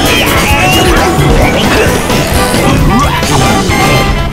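Many animated cartoon soundtracks playing over one another at once: a dense jumble of background music and cartoon sound effects, with frequent crashes and smacks.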